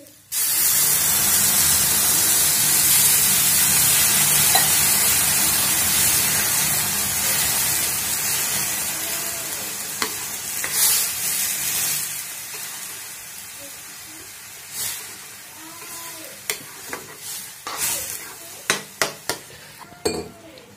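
Water poured into a hot kadhai of oil-roasted ground-dal paste, hissing and sizzling loudly the instant it hits the pan, about half a second in. The sizzle slowly dies down over the second half as the mixture comes to a bubble, with a steel spoon knocking and scraping on the pan near the end.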